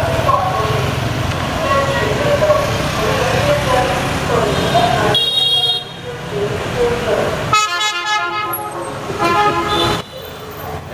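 Busy street traffic of motor scooters and cars: engines rumble steadily for the first half, then, after an abrupt change, horns honk several times, with a longer honk about three-quarters of the way through.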